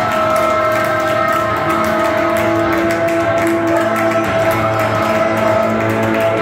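Live band music with long held notes sustained over a steady low bass, guitar among the instruments.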